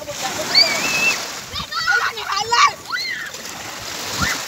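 Children shouting and squealing while playing in the sea, with water splashing around them. There are high calls about half a second in and a burst of shrieks about two to three seconds in.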